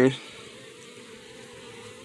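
Honeybees buzzing steadily from an open hive, a low, even hum of many bees on the exposed frames and comb.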